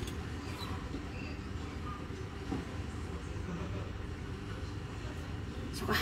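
Steady low background rumble with no distinct events, its level flat throughout.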